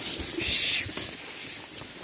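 Leafy branches and scrub rustling as a branch is grabbed and pushed aside on a narrow brush trail, with a short burst of rustling about half a second in.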